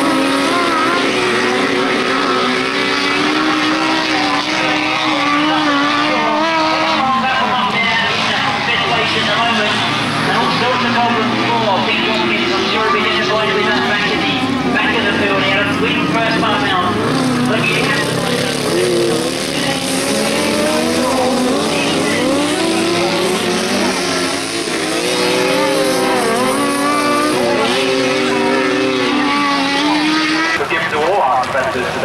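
Grasstrack sidecar outfits racing round the track, several engines revving up and down through the bends and straights.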